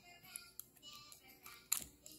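Quiet handling of a dual-ended polygel spatula-and-brush pen, with faint ticks and a sharp click near the end, over faint background music.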